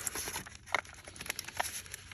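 Scattered light clicks and rustles of a boxed Corsair Vengeance RGB Pro memory kit being handled and set down in the safe's compartment.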